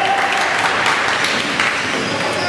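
Players and onlookers clapping and cheering, a dense, steady patter of many hand claps.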